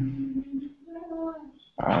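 A person's drawn-out wordless voice sound, held on one steady pitch and then on a slightly higher one.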